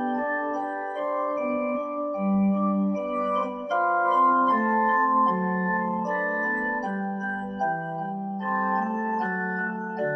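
Electronic keyboard playing slow, held chords, each sustained for a second or so before the next.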